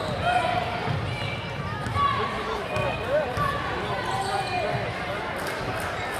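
A basketball dribbled on a hardwood gym floor, with crowd voices all around.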